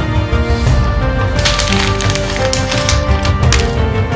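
Newspaper and magazine pages rustling and crackling as they are handled and crumpled, in several rough bursts from about half a second in until near the end. Background music plays throughout.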